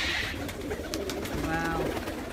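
A flock of domestic pigeons cooing, with a few sharp clicks and a short held low tone near the end.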